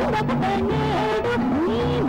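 Instrumental passage of an old Indian film dance song: a melody line with sliding pitches over a steady held low note.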